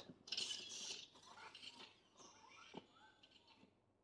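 Motorized Iron Man Mark L replica helmet opening on a voice command: its small servo motors and gears whir and click as the faceplate and shell panels split open. The sound is faint, loudest in the first second and trailing off into small clicks.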